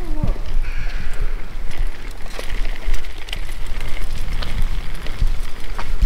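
A steady low rumble of microphone noise from the camera being carried at walking pace, with faint scattered ticks.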